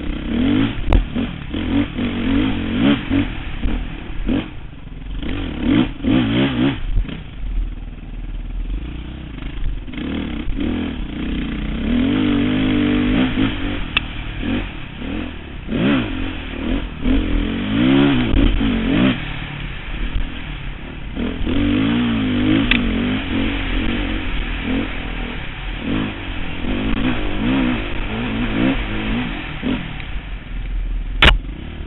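Dirt bike engine revving up and down again and again on the throttle while picking through rough, rocky trail, with repeated clattering knocks from the bike over rocks and roots.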